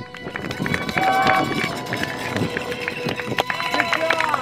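Roadside spectators cheering and shouting, with scattered clapping, as a runner's quick footsteps pass on asphalt.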